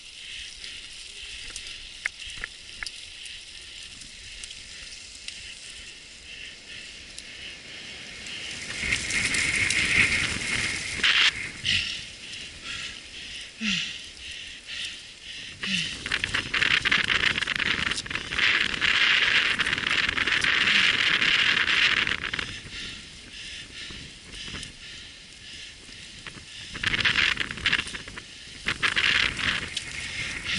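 Mountain bike riding over a dirt trail strewn with dry leaves: tyres crunching and the bike rattling over the ground. Two long, louder stretches of rustling noise come about a third of the way in and through the middle, with shorter bursts near the end.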